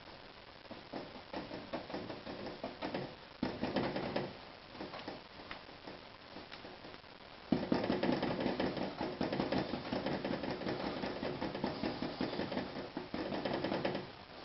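Stiff paintbrush dabbing and scrubbing oil paint onto a canvas in quick strokes. There are short bouts at first, then a louder, continuous run of rapid scrubbing from about halfway in.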